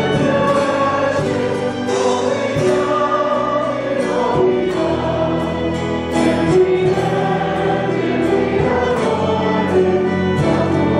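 A congregation singing a hymn together in a church, holding long notes that move from one to the next.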